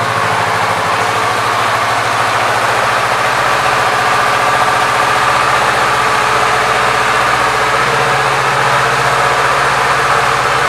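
2021 Kawasaki Z650's 649 cc parallel-twin engine idling steadily.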